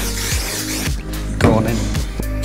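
Background music with a steady beat and held bass notes.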